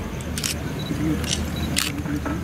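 Camera shutters clicking three times over the low murmur of a crowd's voices.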